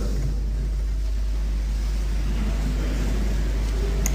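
Steady low hum with faint, irregular background noise above it; no speech.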